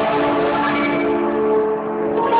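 A plucked string instrument playing, its notes ringing and sustaining into one another, easing off slightly near the end.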